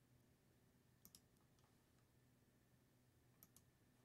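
Near silence with a few faint computer mouse clicks, in pairs: two about a second in and two more near the end.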